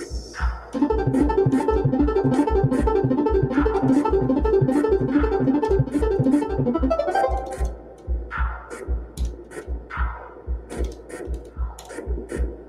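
Electronic music from a Eurora modular synthesizer sequenced by a monome Teletype script. A steady low bass pulse about three times a second runs under clicky percussion. A louder, busy pitched pattern comes in about a second in and drops away around seven and a half seconds, leaving sparser plucked-sounding notes.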